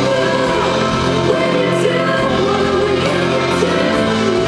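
A live worship band playing a slow song: male and female voices sing held, gliding notes over electric guitar and a drum kit.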